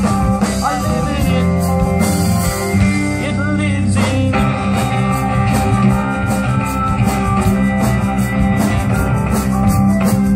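Folk-rock band playing an instrumental passage of a song, with guitar, between sung verses.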